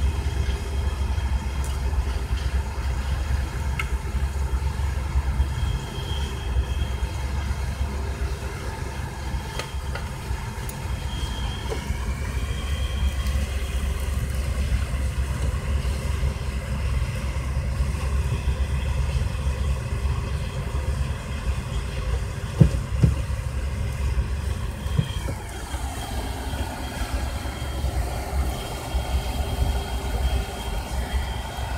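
A vehicle engine idling with a steady low rumble, its pitch shifting about 25 seconds in. A couple of sharp knocks, like a tool against metal, come about 22 seconds in.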